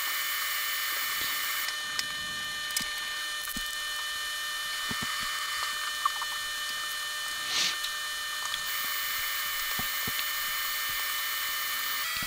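Light handling of small drone parts in plastic bags: a few small clicks and one brief rustle about seven and a half seconds in, over a steady background hiss.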